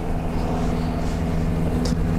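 A motor glider's engine running steadily, a constant even-pitched drone with a low rumble underneath.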